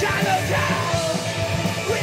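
Live rock band playing electric guitars and drums, with the lead singer's vocal coming in over the top at the start.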